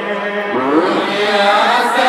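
A group of madrasa students singing an Islamic chant together, unaccompanied. Their melody rises about half a second in, then holds on sustained notes.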